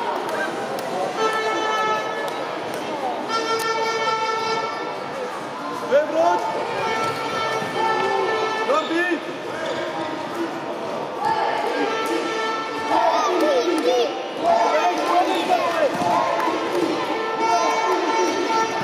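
Futsal ball thudding and bouncing on a wooden indoor court, with children's voices shouting across the hall. A steady horn-like toot, each about a second long, sounds several times.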